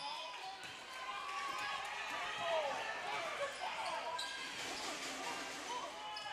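Live basketball play in a gym: a ball being dribbled on a hardwood court over a steady background of distant voices from players and the crowd, all fairly faint.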